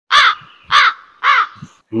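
A crow cawing three times, the caws about half a second apart, each rising and falling in pitch.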